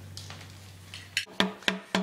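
Hammer taps driving a new axle seal into a Ford 8.8 rear axle tube. A quick, even run of strikes, about four a second, starts a little over a second in, each with a short ringing knock. A low steady hum sounds before the strikes.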